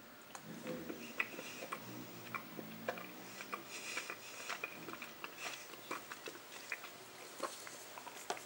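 Faint chewing of a piece of dark orange chocolate, with small scattered mouth clicks.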